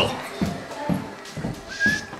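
Irregular low thuds about three a second, like footsteps and handheld camera bumps while walking, with a short high squeak near the end.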